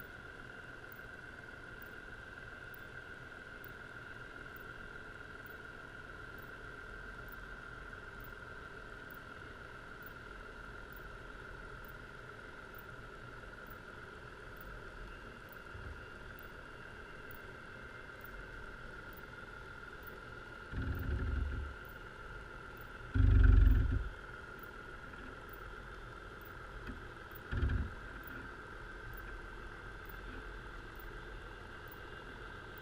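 Underwater recording from a creel resting on the seabed: a steady hum with a constant high tone, broken by three dull low knocks a few seconds apart in the second half, the middle one the loudest.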